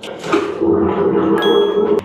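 Train toilet flushing right after its flush button is pressed: a loud, steady rushing hum. A brief high ringing tone sounds over it about one and a half seconds in.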